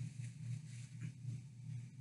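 Faint rustling of a paper napkin as sticky hands are wiped, over a steady low hum.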